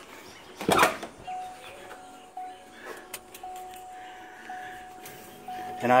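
A single thump, then a thin, steady high warning tone that pulses about once a second, typical of the truck's key or door-ajar chime.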